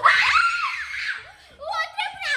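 A young girl screaming, a harsh shriek about a second long, followed by a short pause and a few quick vocal sounds near the end.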